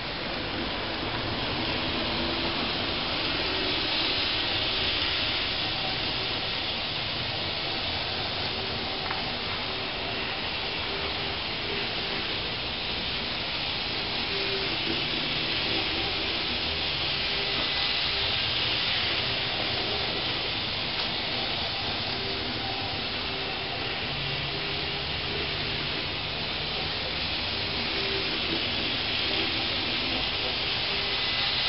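N-scale model train running on its track: a steady hiss of small wheels rolling on the rails, with a faint motor hum that wavers slightly as the train goes round the layout.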